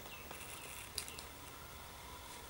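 Quiet small-room tone with two faint, short handling clicks about halfway through.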